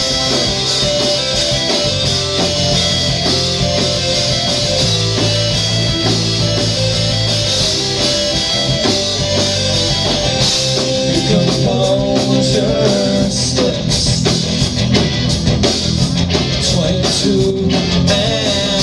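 Live rock band playing an instrumental passage on electric guitars, bass and drum kit, with the drum hits coming through more strongly in the second half.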